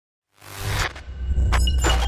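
Logo-intro sound effects: after a short silence, a rising whoosh over a deep bass rumble, then two quick glitchy noise bursts near the end.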